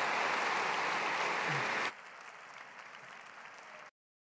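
Audience applauding in a large hall. About halfway through the applause drops suddenly to a faint level, and it cuts off entirely just before the end.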